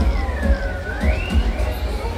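Fairground ride's sound system playing music with a heavy bass beat. A siren-like tone falls and then rises over about a second and a half.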